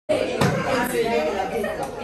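Several people chatting over one another, starting abruptly.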